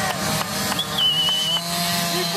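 Small off-road dirt bike engines running steadily, with a brief, high, wavering whistle about a second in.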